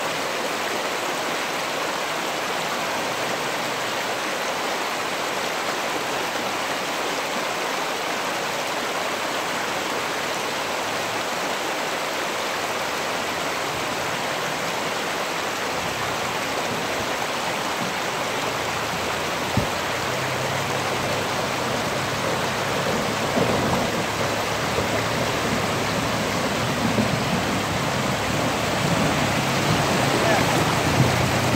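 Creek water rushing steadily over rocks. About halfway through, a 2003 Toyota Tacoma pickup's engine comes in as a low steady hum and grows louder as the truck wades closer. Water splashes around its tyres near the end.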